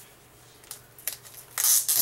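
A plastic top loader sealed with tape is handled in the hands: a few light clicks, then a short, loud rasping rustle near the end.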